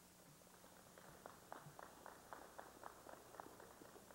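Near silence with a run of faint light clicks, about four a second, starting about a second in.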